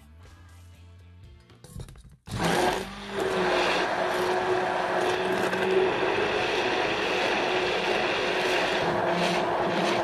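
Stick blender running steadily in a stainless steel bowl of cream, starting suddenly about two seconds in with a loud, even motor hum, whipping the cream until it thickens. Soft background music before it starts.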